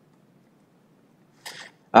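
Faint room hiss, then a short breath drawn in about one and a half seconds in, just before a man starts to speak at the very end.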